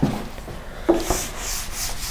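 Felt whiteboard eraser rubbed back and forth across a whiteboard, wiping off marker writing, in repeated swishes of about three strokes a second in the second half.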